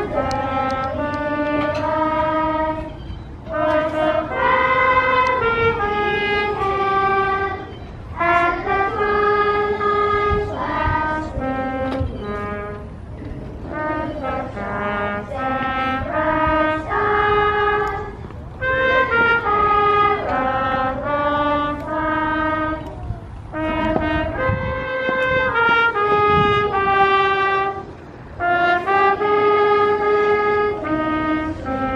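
Brass instruments playing a slow, solemn tune in several parts at once, in phrases of held notes with short breaks between phrases.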